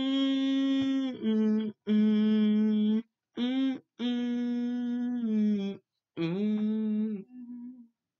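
A man humming a cappella with closed lips: a string of held notes in short phrases, stepping down in pitch. The last note is fainter and stops just before the end.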